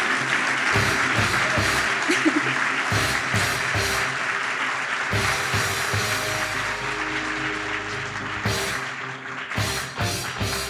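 An audience applauding and clapping, with music with drums playing underneath. The clapping thins out near the end.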